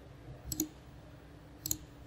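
Computer mouse button clicked twice, about a second apart, each a quick sharp click.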